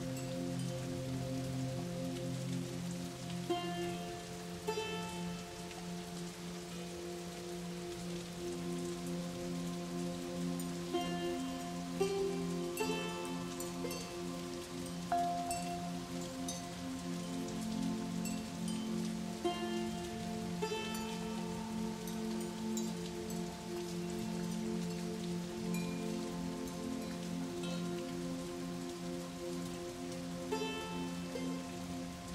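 Slow ambient background music: long held chords that shift every few seconds, over a steady rain-like hiss, with small clusters of high bell-like notes about every eight seconds.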